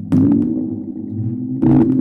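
Live electronic noise music: a steady low electronic hum with two sudden low, pitched hits, one right at the start and the next about a second and a half later, played on a handheld button controller.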